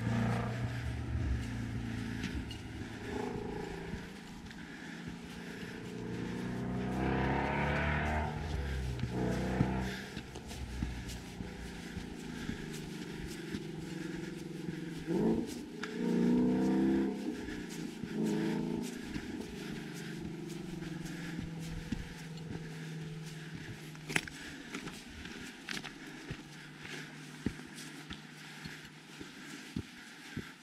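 Footsteps on a dirt trail, with the engine sound of passing vehicles swelling and fading twice, once about a quarter of the way in and again around the middle.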